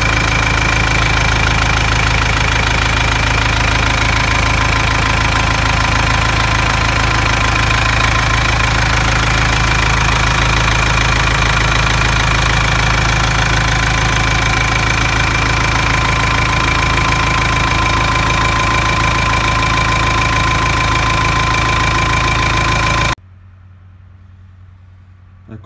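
Forklift's Perkins diesel engine running steadily at idle right after starting, now that the air drawn in through a loose fuel hose has been bled from the fuel system. The sound cuts off abruptly about a second before the end.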